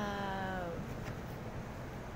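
A woman's voice holding the drawn-out, gently falling end of "good job" for under a second, then a low steady background hiss.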